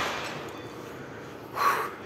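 A man's single forceful exhale, a short breathy rush about one and a half seconds in, as he strains through a heavy biceps curl rep, over a steady low hiss of gym room noise.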